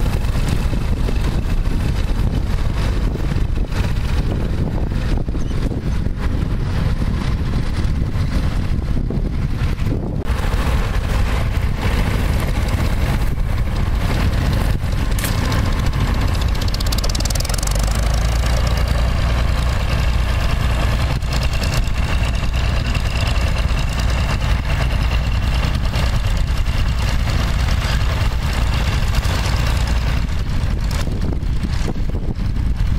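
Vintage tractor engine running steadily under load while pulling a mounted plough through stubble.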